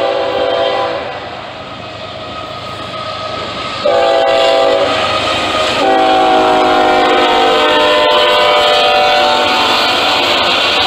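Norfolk Southern ES44AC freight locomotive passing close by, sounding its multi-chime air horn: a blast ending about a second in, a short blast about four seconds in, then a long blast from about six seconds that is still sounding at the end, matching the close of the standard grade-crossing signal. Under the horn, locomotive engines rumble and rail cars clatter over the track.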